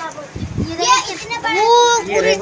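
People's voices, a child's among them, talking and calling, with a long drawn-out high call near the end. A low thump comes about a third of a second in.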